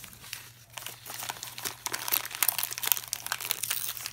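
Shiny gift wrapping paper crinkling and rustling in small hands as a child unwraps a small package, in quick irregular crackles.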